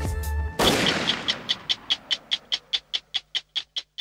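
Programme-ident sound effect: a loud crashing hit about half a second in that slowly dies away, followed by a rapid, even stopwatch ticking, about five ticks a second.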